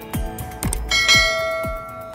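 A bell-chime notification sound effect rings out about a second in and lasts about a second, over background music with a steady beat. It marks the notification bell being clicked in a subscribe animation.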